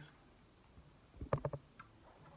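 A quiet room with a quick cluster of three or four short clicks about a second and a half in.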